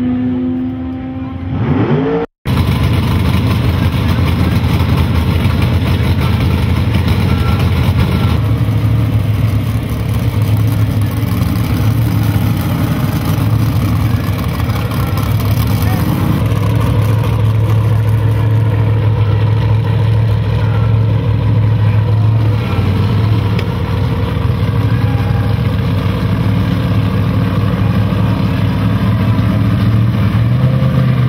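A drag car's engine note rises as it runs away down the strip. After a sudden cut, a Chevy II Nova drag car's engine idles loudly and steadily close up, with a deep, even rumble for the rest of the time.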